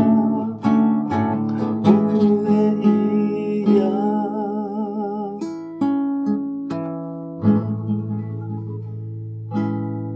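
Acoustic guitar strumming the closing chords of a song, with a man's wordless singing held with vibrato over the first few seconds. The last chord comes near the end and is left ringing, fading out.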